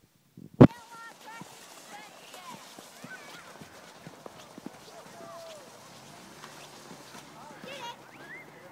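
A single sharp, loud knock about half a second in, then a busy background of distant voices chattering and calling.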